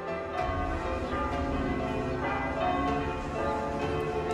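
Bells ringing, struck about every second or less, their notes overlapping as they ring on.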